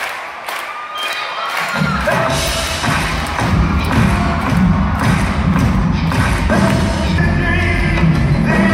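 Live rock band playing in an arena, recorded from the stands: a steady beat of about three hits a second, then about two seconds in the bass and full band come in, with a voice singing over it.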